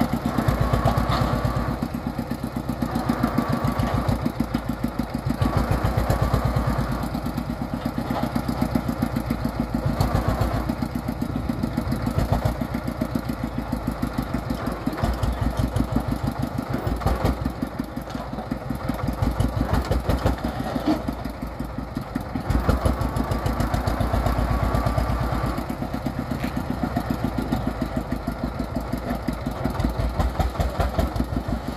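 Chinese single-cylinder diesel engine of a Vietnamese three-wheeled công nông dump truck running with a fast, even knock. It speeds up and drops back every few seconds while it drives the hydraulic tipper that raises the dump bed to unload soil.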